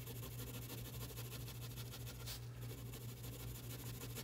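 Faint scratching of a 5B graphite pencil shading on paper, over a steady low hum.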